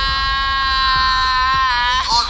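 A man's voice holding one long, high sung note, which dips slightly in pitch near the end.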